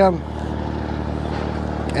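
A steady low engine hum. A man's speech trails off at the start and starts again near the end.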